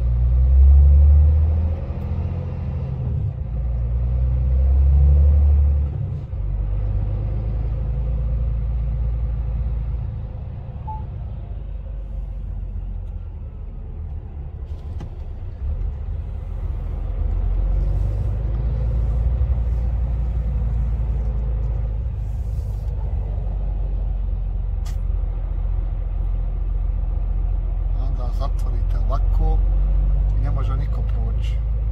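Low, steady rumble of a truck's engine and road noise heard inside the cab while driving, with two louder low surges in the first six seconds.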